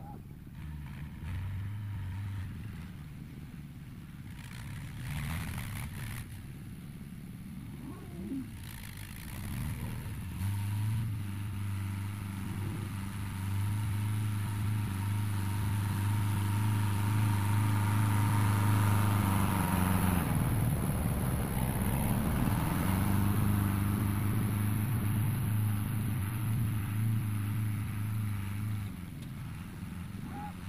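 Fiat 72-93 tractor's diesel engine running with a steady drone. It grows louder from about a third of the way in as the tractor comes closer, dips briefly around the middle, and fades near the end as it turns away.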